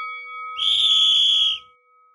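An edited-in sound effect: a bright, steady, high whistle-like tone held for about a second, over the fading ring of a chime.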